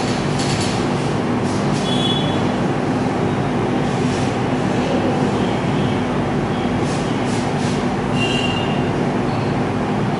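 Steady loud mechanical rumble with a low hum, with short high squeals about two seconds in and again near the end.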